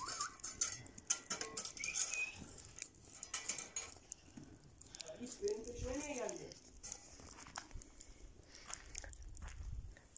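Faint ticking and crackling of a wood fire burning in an open metal grill, with one distant drawn-out call, rising then falling, about six seconds in.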